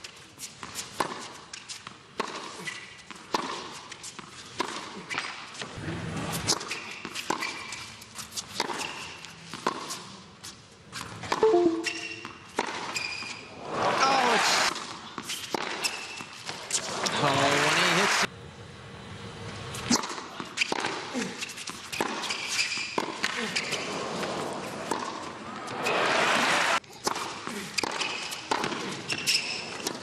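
Tennis rallies on a hard court: the ball struck by rackets again and again in sharp pops, with bounce sounds. Crowd cheering and applause swell up loudly several times between points, with shouts mixed in.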